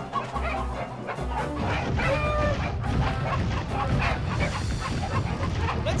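Dramatic cartoon action music over animal squawks and cries from giant mutant chickens.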